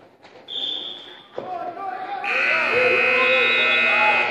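Gym scoreboard buzzer sounding loud and steady from about two seconds in, over spectators' shouting voices; the buzzer marks the end of a wrestling period. A brief high tone sounds about half a second in.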